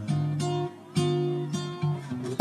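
Background music: acoustic guitar strumming chords, a new chord about once a second.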